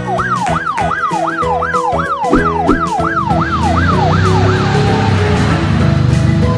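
Police siren rapidly sweeping up and down, about three cycles a second, over background music. It fades out about four and a half seconds in, and a rushing noise with a low rumble takes over.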